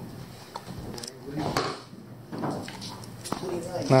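Low, indistinct voices in the room with a few light knocks and clatters, like gear being handled.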